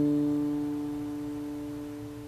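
Piano's closing chord held on the keys, ringing out and slowly fading away.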